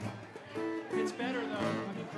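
A few short plucked acoustic guitar notes, each held about half a second, with people talking over them.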